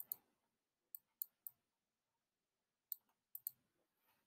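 Computer mouse clicks: about eight short, sharp clicks, some in quick pairs, with near silence between them.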